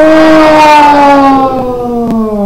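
A long, drawn-out chanted "Sadhu", the closing word of a Buddhist chant, held on one note whose pitch slowly falls. It follows a similar held "Sadhu" just before.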